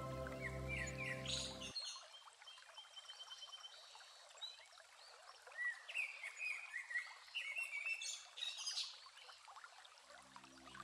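Soft instrumental music stops about two seconds in, leaving small birds chirping and calling over the steady rush of a woodland stream.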